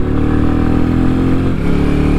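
Royal Enfield Meteor 350's single-cylinder engine running under way, its pitch climbing gradually with a brief dip about one and a half seconds in.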